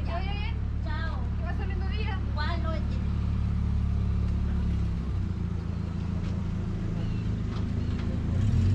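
City street traffic: a motor vehicle's engine idling close by with a steady low hum that shifts slightly about five seconds in. Passersby talk briefly over it in the first few seconds.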